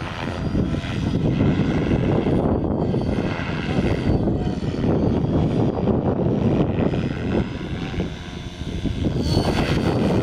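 Align T-Rex 550 Pro radio-controlled helicopter flying aerobatic manoeuvres, its rotor blades whirring in a sound that swells and fades as it turns. The sound dips briefly about eight seconds in.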